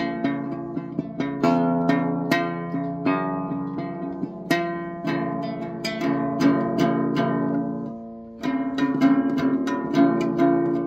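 Acoustic guitar plucked note by note, its strings ringing under each new attack, with a short break about eight seconds in before the picking resumes.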